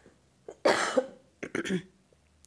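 A person coughing: one strong cough a little over half a second in, then a shorter, weaker one about a second later.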